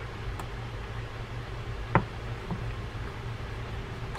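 A screwdriver turning a side-plate screw into a Penn International 12LT reel: a few faint ticks and one sharp metallic click about two seconds in, over a steady low hum.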